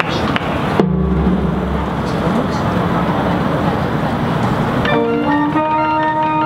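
A marching band starts playing about five seconds in, with held, pitched wind-instrument notes. Before that there is a steady noisy wash, then a low drone from about a second in.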